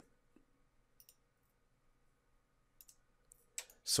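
A few faint computer mouse clicks: two close together about a second in, two more near three seconds, and one just after.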